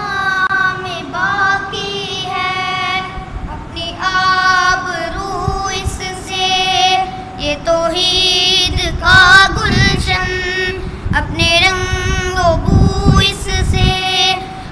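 Boys' voices singing an Urdu Islamic tarana together, unaccompanied, in long held melodic phrases. Low rumbles sit under the singing in the second half.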